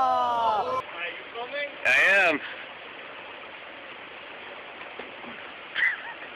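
A drawn-out vocal cry that cuts off under a second in, then a steady rush of flowing creek water with a short high-pitched shout about two seconds in.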